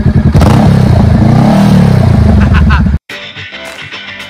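Honda Rebel motorcycle engine blipped from idle: a loud steady rev that rises and falls in pitch. About three seconds in it cuts off abruptly, and rock guitar music follows.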